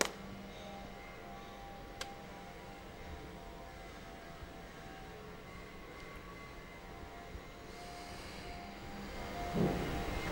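Faint, soft background music of long held tones under a wordless scene, with a light click about two seconds in.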